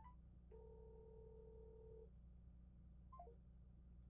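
Near silence with faint telephone tones as a phone call is placed: a short rising beep, a steady ringing tone lasting about a second and a half, then a quick three-note falling chime a little after three seconds in.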